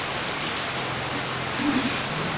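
Steady hiss of the recording with a faint low hum, heard in a pause in a man's talk; a short faint sound of his voice comes near the end.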